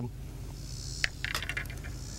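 A steady high-pitched insect trill, like crickets, with a few light sharp clicks about a second in as the small sunfish is handled on the line.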